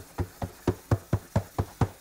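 Cotton shirt dabbed against the wet mesh of a screen-printing screen: a quick, regular patting of about four to five soft thumps a second, blotting out water trapped in the freshly washed-out screen.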